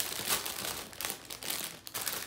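Clear plastic bags crinkling and rustling unevenly as hands dig through a bag of small plastic packets of diamond painting drills.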